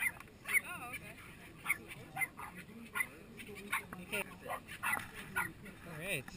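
A dog barking and yipping repeatedly, short sharp high yelps about every half second, some with a wavering, whining pitch.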